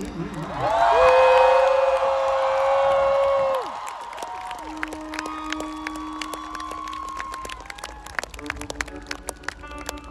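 Large outdoor crowd cheering and clapping as a rock song ends. A long, loud held shout or whoop rises about a second in and breaks off after a few seconds. Fainter whoops and scattered hand claps follow.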